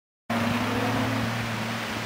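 Silence, then about a quarter second in an off-road competition safari 4x4's engine cuts in abruptly, running at a steady pitch under a broad rushing noise as the vehicle drives across a field.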